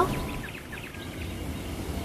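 Quiet outdoor background sound with a low steady rumble.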